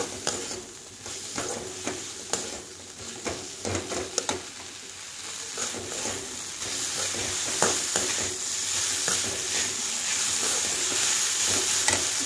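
Brinjal (eggplant) strips frying in oil in a pan, sizzling, while a slotted metal spatula stirs them, with scattered clicks and scrapes against the pan. The sizzle grows louder and steadier in the second half.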